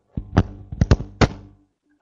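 Keystrokes on a computer keyboard picked up by the microphone: about six short sharp clicks in the first second and a half.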